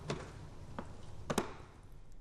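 The filter cover of a Dräger X-plore 7300 powered air purifying respirator is pressed down onto the unit and clicks into place. There are a few short clicks, the loudest a quick double click about a second and a half in.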